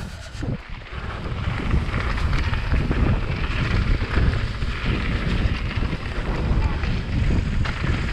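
Wind buffeting an action camera's microphone over the rumble and rattle of mountain bike tyres rolling down a gravel trail. It grows louder about a second in as the bike picks up speed, then holds steady.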